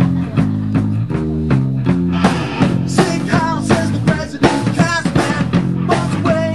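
Live rock band playing: distorted electric guitars, bass guitar and a drum kit keeping a steady beat. About two seconds in, a higher melodic line with bending pitch comes in over the chords.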